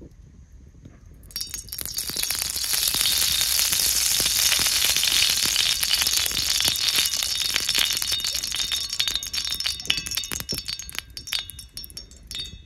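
Cooking oil poured from a small glass bottle onto an empty iron tawa: a continuous splashing hiss that starts about a second in. Near the end it breaks up into separate drips and ticks as the pour stops.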